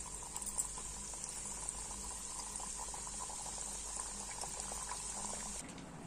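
Thekua dough frying in a pan of hot oil: a steady sizzle with many small pops and crackles, which cuts off suddenly near the end.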